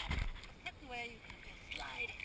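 Small sea waves lapping and sloshing against a GoPro held at the water's surface, with brief faint voices about a second in and again near the end.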